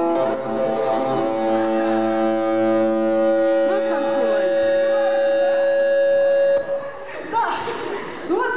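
A live rock band's amplified instruments, electric guitar among them, holding one steady ringing chord that stops abruptly about six and a half seconds in; a voice comes in briefly in the middle and again after the stop.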